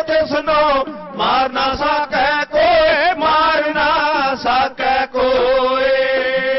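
Men singing a Sikh dhadi var in an ornamented, chanting style with wavering pitch, accompanied by a bowed sarangi and struck dhadd hourglass drums. A long note is held near the end.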